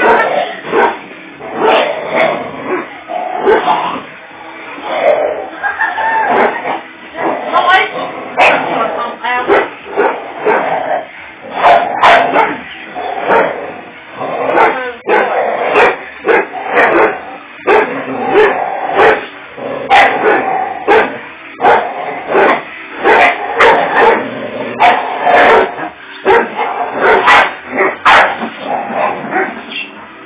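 Two dogs barking and yipping in rough play as they tug against each other on a rope toy, in frequent short sharp outbursts.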